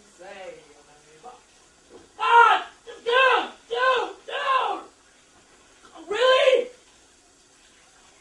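A man's voice letting out a string of short, high yells that rise and fall, four in quick succession about two seconds in and one more near the end.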